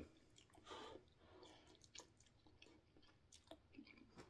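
Faint chewing of a mouthful of ramen noodles, with a soft sound about a second in and a few small clicks; otherwise near silence.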